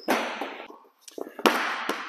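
A basketball bouncing on a hardwood court, heard as a few sharp impacts. One comes right at the start and a louder one about one and a half seconds in, each ringing on in the echoing metal-walled gym.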